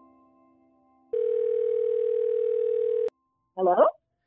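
Telephone ringback tone heard by the caller: one steady ring about two seconds long, starting about a second in and cutting off sharply, on an outgoing call that is answered moments later.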